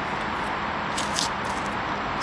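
Steady outdoor city background noise, a low traffic rumble, with a couple of brief soft hissing swishes about a second in.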